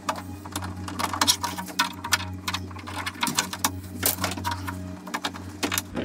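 Irregular metallic clicks and taps of a gloved hand and screwdriver working inside the steel shell of a classic Mini door, undoing the door handle's screw, over a steady low hum.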